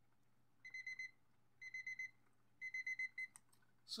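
Digital timer alarm beeping in three bursts of rapid high beeps about a second apart, marking the end of a coffee brew's steep time. A couple of sharp clicks follow near the end.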